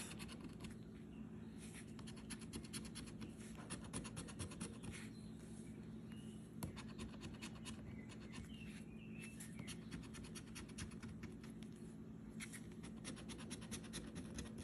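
Scratch-off lottery ticket being scratched with the edge of a metal challenge coin: a faint, quick run of scraping strokes as the coating is rubbed off the number spots.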